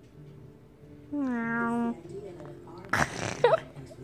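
A dog vocalizing while chewing: one drawn-out whine, falling slightly in pitch, about a second in, then a shorter, noisier cry around three seconds in.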